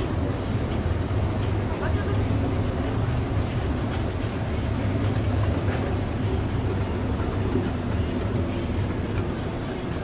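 A Mitsubishi J-series escalator, installed in 1996, running under a rider with a steady low hum from its drive and moving steps.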